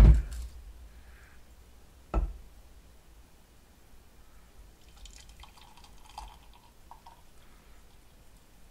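Melted gummy-bear syrup poured from a tilted frying pan into a ceramic mug: faint trickling and dripping, with one sharp knock about two seconds in.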